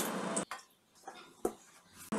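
A low hiss that cuts off about half a second in, then near silence with a faint click and one sharp knock of steel kitchenware as cooked tomatoes are tipped from a steel plate into a mixer-grinder jar.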